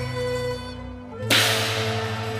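Cantonese opera instrumental accompaniment playing sustained stepping notes, with one sharp percussion strike about a second and a half in that rings on afterwards.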